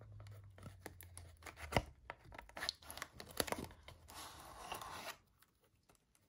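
A paperboard playing-card tuck box and its deck being handled: the flap is worked open and the deck slid out. There are small clicks and rustles, a sharper click about two seconds in, and a scraping rustle of about a second near the four-second mark.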